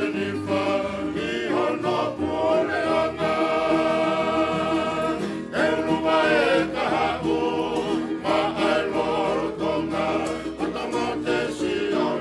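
Music: a choir singing a song in harmony, with long held notes.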